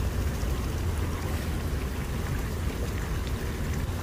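Water splashing and burbling steadily from small bubbler jets in a shallow pebble-bottomed pool, with a low rumble underneath.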